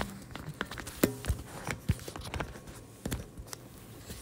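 Handling noise from a recording camera being moved and tightened in place: irregular knocks and clicks, a few sharper ones about a second in and near the two-second mark.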